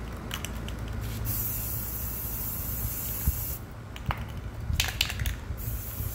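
Aerosol spray paint can spraying onto the water in a bucket, laying a paint film for hydro dipping: one long steady hiss starting about a second in and lasting some two and a half seconds, then a second hiss starting near the end. Short bursts of clicking come between the sprays.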